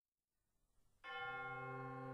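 Wind band opening with a sustained, bell-like chord that comes in suddenly about a second in and holds steady.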